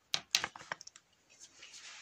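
A quick run of sharp clicks and knocks in the first second, then faint scuffing: handling noise and steps on a rough, stony tunnel floor.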